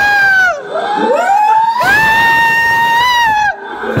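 Frightened screaming: three high-pitched screams, the first short, the second rising, the last held for about a second and a half.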